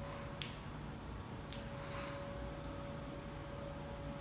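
Yale NTA0305B forklift driving and turning: a faint steady whine over a low hum, with two sharp clicks about a second apart near the start.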